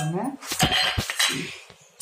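Steel spoon knocking a few times against a stainless steel bowl, then scraping through mashed potato as spice powder is mixed in, the scraping fading away near the end.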